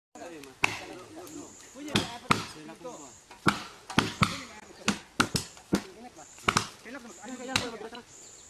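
Chopping blows of hand tools into a felled tree trunk: about a dozen sharp, irregular strikes of blade on wood, with men's voices between them.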